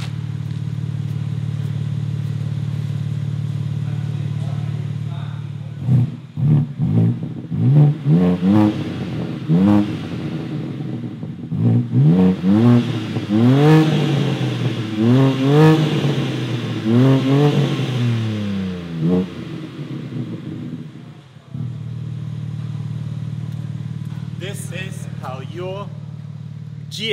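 BMW M4 G82's S58 twin-turbo straight-six idling through its exhaust with both exhaust valves held open by an aftermarket valve controller. About six seconds in it is blipped over and over in quick revs, each rising and falling, for about thirteen seconds, then settles back to a steady idle.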